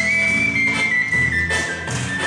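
Shvi, the Armenian fipple flute, playing a high melody: one long held note that lifts slightly, then steps down gradually. Bass guitar and drums with cymbal strokes play beneath it.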